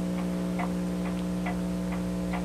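Pendulum wall clock ticking faintly, about two ticks a second, over a steady electrical hum.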